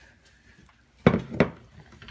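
Glass measuring cup set down on a hard surface: two knocks in quick succession about a second in.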